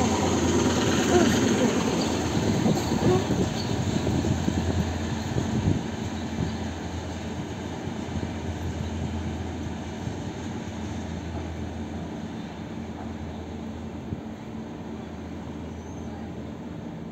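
ET2M electric multiple unit pulling out of the station past the platform, its wheels and cars rumbling over the rails, the sound fading steadily as the train draws away.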